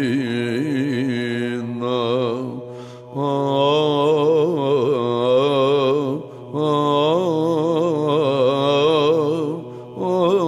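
Byzantine chant in the plagal fourth mode: a male chanter sings a melismatic melody with quick wavering ornaments over a steady held drone (ison). It comes in three phrases, with brief breath pauses between them at about two and a half seconds and about six seconds.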